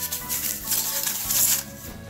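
Plastic packaging wrap rustling and crinkling as a small parcel is handled and unwrapped by hand, over background music.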